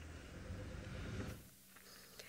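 Faint, steady low hum of a safari vehicle's engine running. It cuts off abruptly about a second and a quarter in, leaving a much quieter background.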